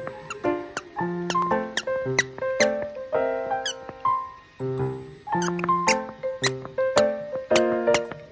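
Plush squeaky toy squeaking in many short, irregular squeaks as a dog bites and shakes it, over louder background piano music.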